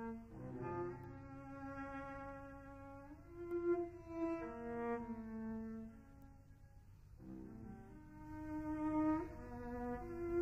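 Solo cello bowing long sustained notes, sliding up in pitch twice, about three seconds in and again near the end.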